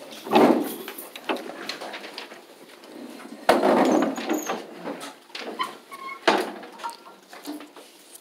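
Handling noise of a handheld phone camera being picked up and carried, mixed with irregular knocks and clatter of classroom chairs and desks. There is a loud knock about three and a half seconds in and a brief high squeak just after.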